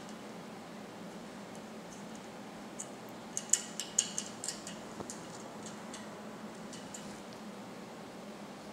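Small metallic clicks and ticks of an Allen wrench being fitted into and turned in a set screw at the base of a metal tripod pole, bunched together a few seconds in and fainter after, over a steady low hum.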